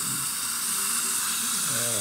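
Dental suction tip (saliva ejector) in the patient's mouth, drawing air with a steady hiss.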